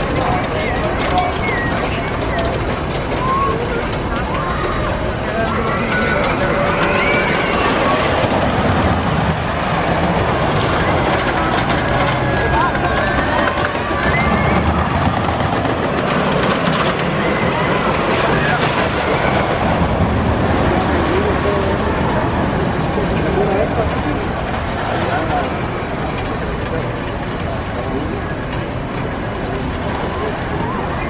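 Giant Dipper wooden roller coaster train running along its track, slightly louder around the middle as it passes, over the constant chatter and voices of a crowd.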